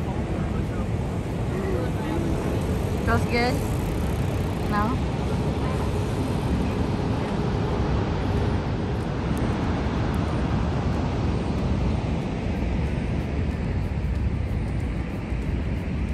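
Steady low roar of Niagara Falls' falling water, with faint voices of people close by.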